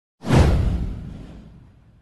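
A swoosh sound effect for an intro animation: a sudden rush with a deep low boom underneath, starting about a fifth of a second in and fading away over about a second and a half.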